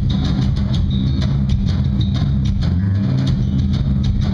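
Live rock band playing, with electric guitars and a drum kit driving a steady beat over a heavy low end.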